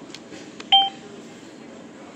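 ATM keypad beeping once, briefly, as a key is pressed.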